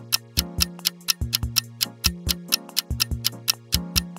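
Countdown timer music: a clock-like ticking, about five ticks a second, over held low bass notes.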